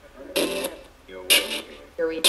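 Homemade ghost box sweeping through audio files, putting out two short chopped fragments of voice about a second apart, each cutting in and out abruptly.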